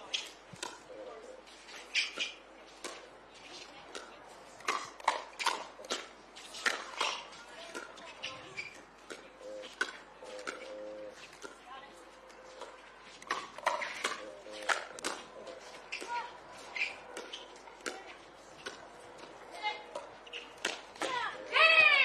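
Pickleball paddles striking the plastic ball over and over in a long rally at the net: short, sharp pops at uneven spacing, about one a second, with faint voices between the hits.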